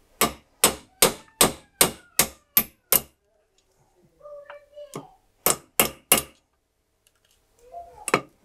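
Ball-pein hammer striking the punch of a steel disc cutter set on a wooden stump, cutting out metal discs. It strikes a run of about eight sharp blows, two or three a second, then after a pause three more.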